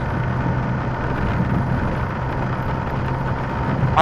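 BMW motorcycle cruising at freeway speed: a steady rush of wind and road noise over a low, even engine hum that holds one pitch throughout.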